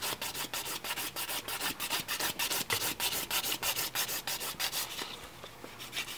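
Hand nail file rasping back and forth over a cured gel nail in quick, rhythmic strokes, smoothing the top surface in the final filing, growing quieter near the end.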